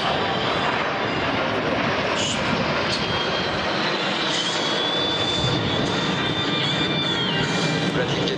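Turbofan engines of a six-ship formation of Aero L-39 Albatros jet trainers flying past, a steady loud rushing noise. A high steady whine rises above it about four seconds in and fades out near the end.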